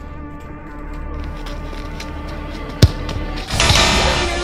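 Background music throughout, with a single sharp thud of a football being struck about three-quarters of the way in; just before the end the sound swells louder.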